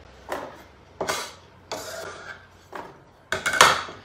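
Kitchen utensils and cubed potato handled on a wooden cutting board and metal pan: a series of short knocks, scrapes and clatters, the loudest near the end.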